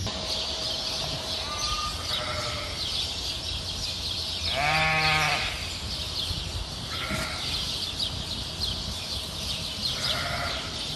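Sheep bleating in a lambing barn: one long, loud bleat about halfway through, with fainter bleats earlier and later.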